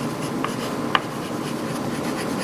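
Chalk writing on a chalkboard: a steady scratching, with two short squeaks about half a second and a second in.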